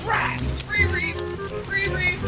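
Background music with people's voices over it. A short, loud cry comes right at the start, and a couple of higher calls follow.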